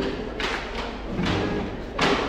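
Thuds and swishes of a handheld phone's microphone being knocked and rubbed, over faint music.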